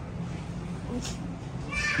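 Store background with a steady low hum and a brief hiss about a second in; near the end a person's high, drawn-out voice starts.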